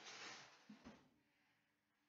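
Near silence with faint handling sounds of a baking tray going into an oven: a brief soft hiss-like rustle, then two soft clicks just before a second in.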